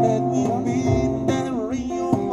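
Live acoustic music: two acoustic guitars strummed with a djembe, and a man singing, his voice bending and wavering on a note near the end.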